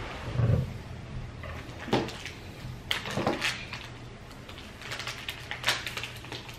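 A plastic bag of coloured sand being handled and rustled, with a few light clicks and knocks from craft pieces on the tabletop, over a low steady hum.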